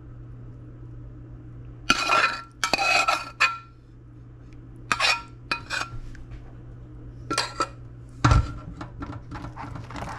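A slotted metal spoon scraping and clinking against a metal saucepan as pot roast is scooped out, in several short clusters of clinks, with a heavier thump about eight seconds in. A steady low hum runs underneath.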